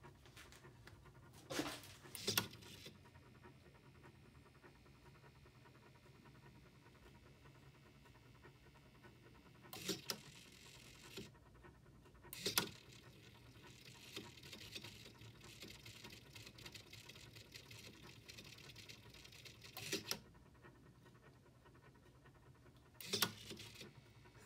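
Mostly quiet room tone with a faint hiss and a few scattered short clicks and knocks. Near the end comes a short, louder burst as a hobby servo flips a wall light switch on, triggered by the PIR motion sensor.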